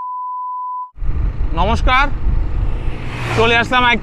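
A steady single-pitch test-tone beep that cuts off just before a second in. Then a loud low rumble of wind on the microphone and road noise from a moving scooter, with a man starting to talk over it.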